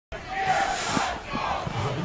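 Several people shouting at once at a football match, a steady din of voices with a few calls standing out.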